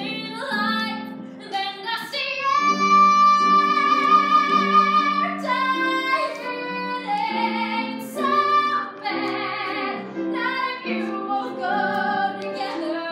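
A woman sings a musical-theatre song live, accompanied on a grand piano. About two and a half seconds in she holds one long note for nearly three seconds, then goes on through shorter phrases.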